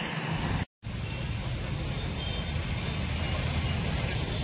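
Steady outdoor road-traffic noise, a continuous low rumble with hiss, cutting out completely for a split second just under a second in.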